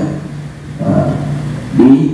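A man's voice amplified through a handheld microphone, speaking with a short pause in the first half second.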